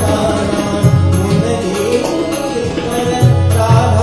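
Devotional bhajan sung live, a voice singing a melodic line over tabla strokes and sustained harmonium accompaniment.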